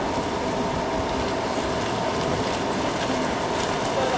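Steady splashing of water polo players swimming in an outdoor pool, with a faint steady hum underneath.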